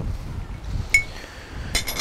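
A metal spoon clinks once, about a second in, with a short ringing tone, over a low background rumble.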